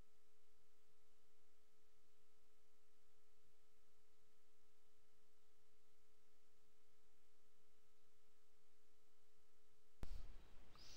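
A faint, steady electronic tone at one pitch, with a fainter higher tone above it, over a low hiss.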